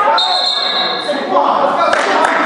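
Referee's whistle blown once for about a second, a steady high tone, followed by spectators' shouts and voices in the hall.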